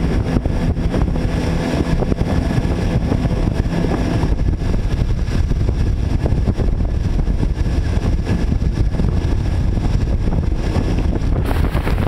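Motorized watercraft running at speed: a steady engine drone under the rush of its churning wake, with wind buffeting the microphone.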